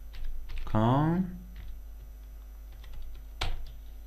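Computer keyboard typing: a few scattered keystrokes, with one louder click about three and a half seconds in.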